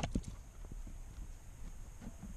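A sharp plastic click right at the start and a softer knock just after, then faint small clicks and rubbing as a hand works the plastic parts around a car's cabin filter housing under the dashboard.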